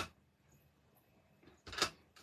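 Faint room tone, then one short, sharp rustle-click near the end as a clear photopolymer stamp on an acrylic block is picked up and handled.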